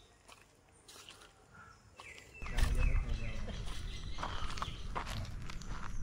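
Footsteps with a low rumble, starting about two seconds in after a near-silent stretch.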